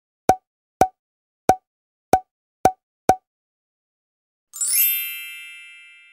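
Six short pop sound effects about half a second apart, one for each book cover appearing on screen. About four and a half seconds in, a bright shimmering chime rings out and slowly fades.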